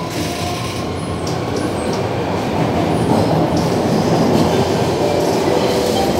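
SBS Transit C751C metro train heard from inside the carriage while running: a steady rumble of wheels on rail and traction noise, getting somewhat louder in the second half.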